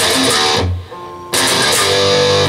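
Distorted electric guitar: a chord struck and left ringing, a quieter note, then a second chord struck about a second and a half in and left ringing.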